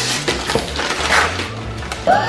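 Gift wrapping paper being torn and crumpled off a present, a dense run of crinkling and ripping.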